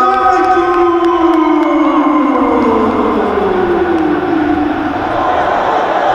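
A siren winding down: one long tone gliding slowly downward in pitch for about five seconds, over a steady hiss, just as a held musical chord cuts off.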